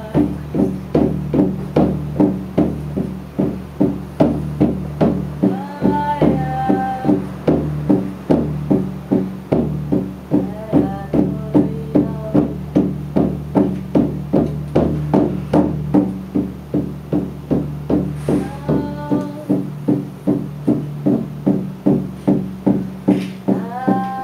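Live acoustic music: a hand-held frame drum struck with a beater in a steady beat about twice a second, over a steady low drone. A woman's voice sings short phrases now and then, and a plucked string instrument plays along.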